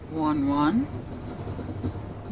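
A single spoken word near the start, then a low steady background hum.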